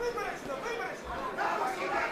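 Indistinct voices talking over the chatter of an arena crowd.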